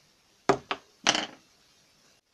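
Two quick knocks about half a second in, then a louder clattering thud just after a second: things being handled and set down on a wooden tabletop.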